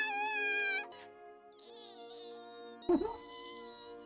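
Anime soundtrack: a high, wavering cartoon wail of panic, then held music chords.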